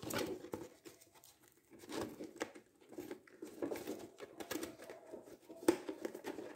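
Faint rustling and a few light clicks of small objects being handled, with a quiet stretch about a second in and sharper clicks near the end.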